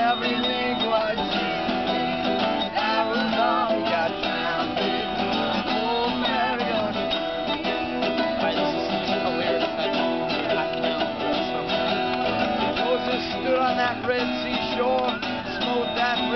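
Acoustic string trio playing: two steel-string acoustic guitars strumming and a mandolin picking the tune of a folk song.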